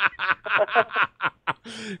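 A man laughing in a run of short, quick chuckles, about five a second, tailing off near the end.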